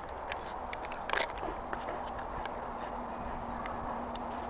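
Small crunches of someone chewing a dry cracker, with one louder crunch about a second in.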